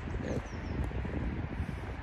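Wind rumbling on the microphone, with a few faint high bird chirps, a quick falling run of notes, in the first second.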